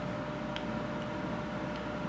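Quiet room background with a faint steady hum, and one light click about halfway in as the loose whittled wooden ball knocks inside its carved cage.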